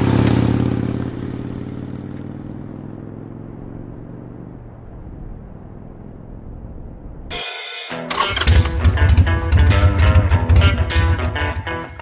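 A vintage motorcycle engine running as it passes close, its sound fading away over several seconds. About seven and a half seconds in, music with a strong beat starts suddenly.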